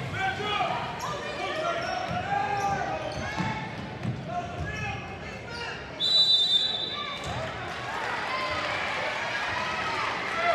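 Basketball bouncing on a hardwood gym floor under spectators' voices and shouts. About six seconds in, a referee's whistle blows once for about a second, stopping play.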